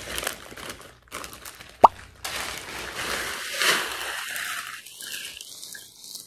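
Plastic-wrapped instant ice packs rustling and crinkling as they are handled, with one short rising plop a little under two seconds in.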